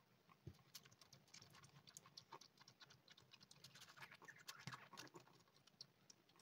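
Kitten suckling milk from a feeding bottle: faint, quick, irregular wet clicks and smacks of its mouth working the teat, thickest a few seconds in.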